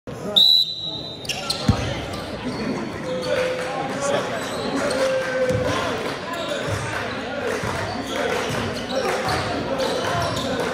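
Basketball game in a school gym: a short, loud high whistle blast near the start, then a basketball bouncing on the hardwood floor, with voices echoing in the hall throughout.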